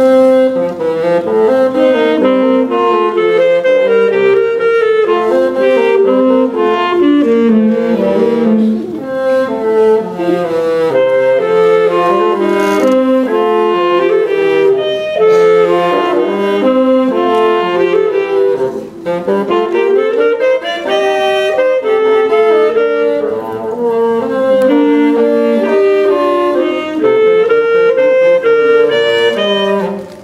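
Saxophone and bassoon playing a duet, two melodic lines weaving around each other, with a brief lull about two-thirds of the way through.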